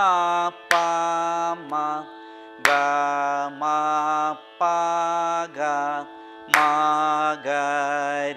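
A male Carnatic vocalist singing swaras of a madhya sthayi varisai exercise in raga Mayamalavagowla. He sings held notes in short phrases, with brief glides between notes, over a steady drone.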